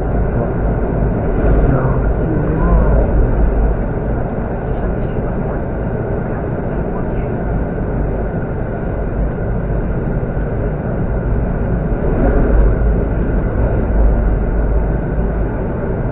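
Steady running noise inside an ED72 electric multiple unit, a low rumble of wheels on rail, as the train crosses a steel railway bridge.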